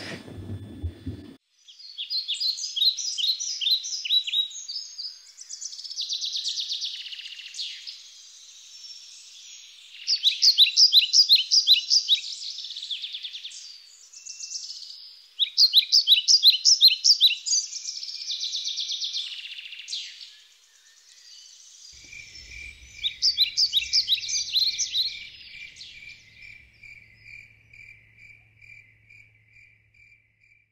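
Birds singing in repeated high, rapidly trilled phrases, each about two seconds long. From about two-thirds of the way in, a cricket chirps steadily, a few chirps a second.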